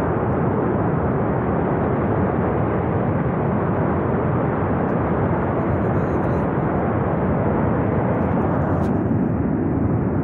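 Flash flood and debris flow from a glacier collapse rushing down a mountain gorge: a steady, unbroken rushing rumble with no separate crashes.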